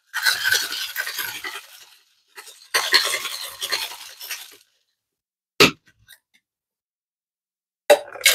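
Ice rattling inside a tin-on-tin cocktail shaker as a drink is shaken hard to chill it, in two bouts of about two seconds each. A single sharp knock follows a little past halfway, then it goes quiet.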